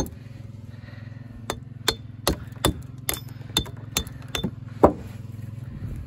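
Walling hammer striking a Cotswold limestone block to dress it: about a dozen sharp, ringing knocks at uneven intervals, the loudest near the end, over a steady low hum.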